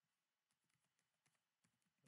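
Very faint computer keyboard typing: a quick run of a dozen or so key clicks starting about half a second in.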